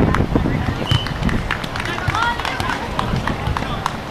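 Players' voices calling out during a sand volleyball rally, with scattered sharp clicks and a constant low rumble behind them.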